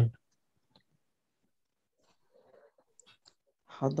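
A quiet pause in speech broken by a few faint, scattered clicks, with a faint murmur about two and a half seconds in.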